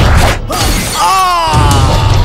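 Fight-scene sound effects over background music with a heavy beat: a hit and a crash of shattering glass, then a short pitched cry while the beat drops out for about a second.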